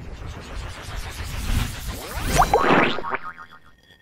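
Sound effects for an animated logo intro: a swelling whoosh with rising, springy pitch sweeps that peaks a little past halfway, then fades to a faint, steady, high ringing.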